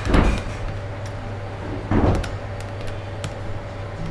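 Two brief rustling knocks, about two seconds apart, over a steady low hum.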